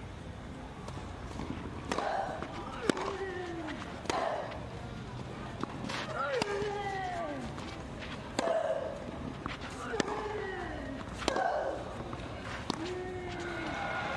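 A long tennis rally on clay: racquets strike the ball with sharp pops about every one and a half seconds, and the players let out a grunt on most shots, each falling in pitch.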